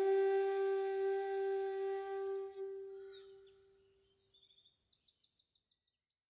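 Outro flute music ends on one long held note that fades away over about four seconds. Faint, rapid, high chirps follow and stop abruptly at the end.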